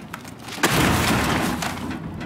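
A computer thrown into a metal dumpster: a sudden loud crash and clatter about half a second in, dying away within about a second.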